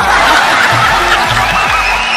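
Audience laughter breaking out all at once after a punchline, over background music with a steady beat.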